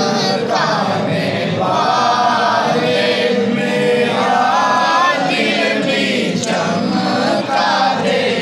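A man chanting into a microphone in long, melodic held notes that waver and rise and fall, without a break.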